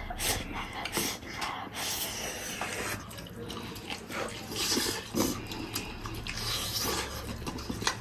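Wet, irregular chewing, lip-smacking and sucking of two people gnawing pig's trotters by hand, with short clicky smacks throughout.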